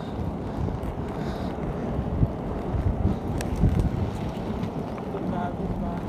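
Wind buffeting the phone's microphone: a steady low rumble with uneven swells, over the rolling of skate wheels on an asphalt path.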